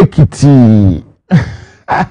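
A man's voice letting out a drawn-out, falling 'ahh' like a sigh, followed near the end by a short breathy sound.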